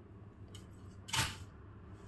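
A single short swish of cloth about a second in, as a sequin-embroidered georgette suit is flapped open onto a table; otherwise low room tone.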